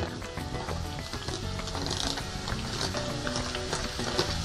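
Soft background music over a light sizzle of sliced mushrooms being tipped and scraped from a plastic container into hot oil in a frying pan.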